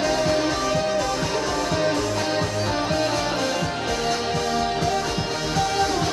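Electric guitar played over a band backing track with a steady drum beat.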